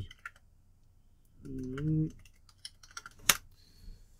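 Typing on a computer keyboard: irregular keystrokes throughout, with one sharper, louder key strike near the end. A person's short hum sounds about one and a half seconds in.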